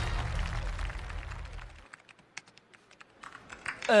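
Laptop keyboard typing: scattered, irregular key clicks. The low end of background music cuts off about two seconds in, and a short vocal "uh" comes at the very end.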